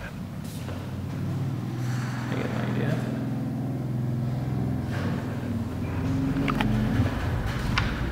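A steady low mechanical hum of a motor or engine running, with a few light clicks near the end.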